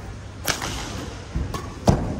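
Badminton racket strikes on a shuttlecock: two sharp cracks about a second and a half apart, the second louder, with a fainter knock between them.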